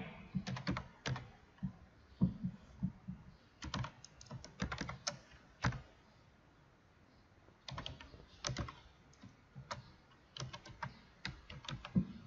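Computer keyboard being typed on: irregular keystrokes in short runs as a formula is entered, with a pause of about a second and a half a little past the middle.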